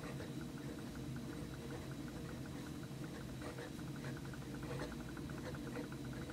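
Fountain pen stub nib scratching faintly across notebook paper while words are written, a quick run of small scratches over a steady low hum.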